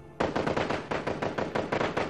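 Machine-gun fire sound effect: a rapid, sustained burst of shots, about nine a second, starting just after the beginning.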